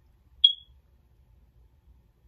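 A single short, high-pitched electronic beep about half a second in.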